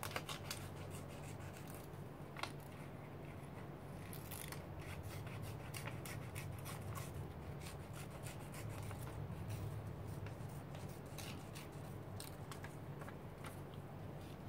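Small scissors cutting paper: irregular, faint snips as a stamped image is cut out by hand along a curved, not straight, outline to make a mask.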